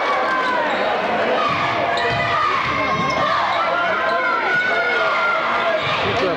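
Basketball game in a gym: the crowd talking and shouting over each other, with a ball bouncing on the hardwood court during play.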